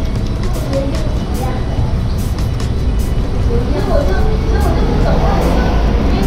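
Busy small-restaurant kitchen ambience: a steady low rumble under faint background voices, with scattered light clinks of dishes and utensils.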